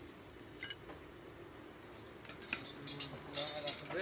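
A few faint clinks and scrapes of broken clay roof tiles and rubble, as under footsteps, with a denser patch of sharp clinking near the end.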